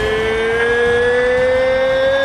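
A sustained tone in the soundtrack gliding slowly and steadily upward in pitch, with fainter higher tones rising along with it.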